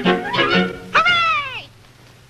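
Bouncy cartoon orchestral music with fiddle, then one loud meow about halfway through that rises and falls away, after which the music drops out.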